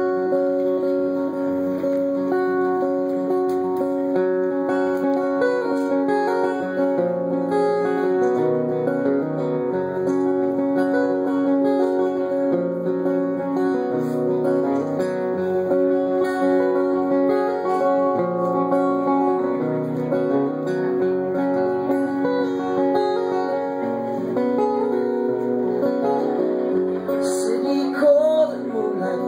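Two acoustic guitars playing a slow instrumental introduction together, strummed and picked chords with notes left ringing, at a steady level.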